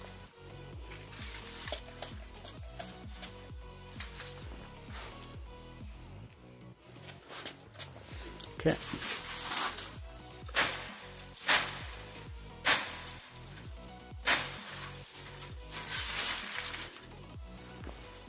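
Hand spray bottle spraying tin chloride solution onto a glass petri dish heated to about 400 °C on a hot plate: about seven short spray hisses starting about halfway through, with the droplets sizzling on the hot glass. Aluminium foil crinkles as the cover over the dish is moved.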